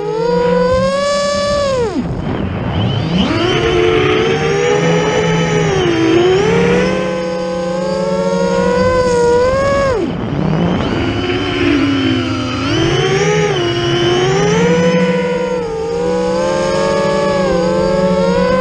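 Brother Hobby 2812 400kv brushless motors spinning Graupner 10x5x3 three-blade props on a 12S quadcopter, heard from its onboard camera: a whine that rises and falls in pitch with the throttle. Twice, about two and ten seconds in, the pitch drops steeply and then climbs back up.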